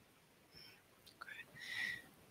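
A pause with near silence, then a faint breathy sound in the second half, like a person's intake of breath.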